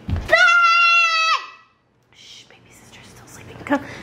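A young boy's long high-pitched squeal, held steady for about a second and dropping in pitch as it ends, just after a low thump.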